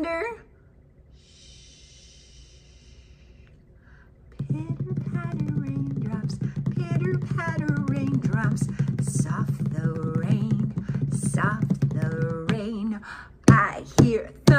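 A woman hushes with a soft 'shh' for a couple of seconds. From about four seconds in she sings in a wavering voice without clear words, stopping shortly before the end.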